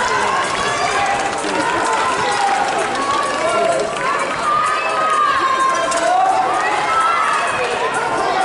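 Crowd of spectators shouting and calling out to the runners in a relay race, many voices overlapping.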